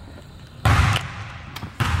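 A basketball bouncing twice on a hardwood gym floor, about a second apart, each thud trailing off in the hall's echo.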